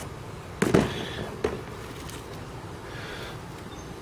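Two sharp knocks of old metal mower-deck spindle parts being handled in a cardboard box, under a second apart, the first the louder.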